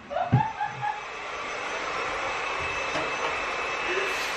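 A woman's short laugh, then a steady rushing noise that begins about a second in and builds slightly.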